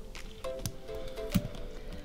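Soft background music with held notes, over a few faint wet clicks and squishes as a thick stream of white craft glue pours into glue already pooled in an inflatable plastic paddling pool.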